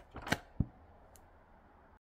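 Paper pages of a thick book flipping, then the book closing with a single soft thump about half a second in, followed by a faint tick.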